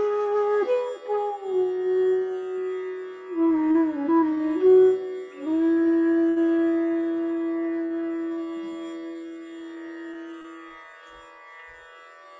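Side-blown bamboo flute playing a slow, ornamented Indian-style phrase with slides between notes, then settling on one long held low note about five seconds in that fades away near the end. A faint steady drone continues beneath it.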